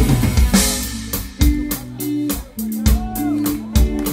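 Live rock band playing an instrumental passage on drum kit and electric guitars. About a second in, the full band drops back to quieter held notes broken by sharp drum hits.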